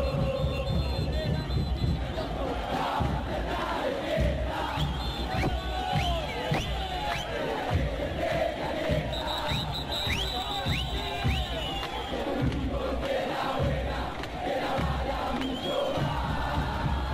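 A large football crowd of Independiente supporters singing and chanting together in the stands, a steady wall of many voices.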